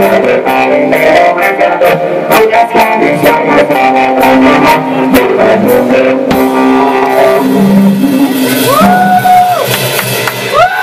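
A rock band playing live: electric guitar and drums, with regular cymbal and drum hits for about six seconds. The drums then stop and the guitar chords ring on as the song ends. Near the end a voice lets out a long drawn-out call.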